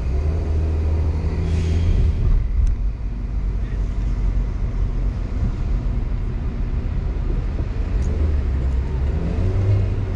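Road noise of a car driving in city traffic: a steady low rumble of engine and tyres, heavier in the first two seconds and again near the end, with a brief hiss about a second and a half in.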